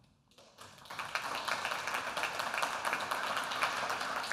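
Audience applauding: many hands clapping in a dense, steady patter that starts about half a second in.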